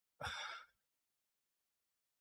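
A short sigh, a breathy exhale into a close microphone, lasting about half a second and starting a fraction of a second in.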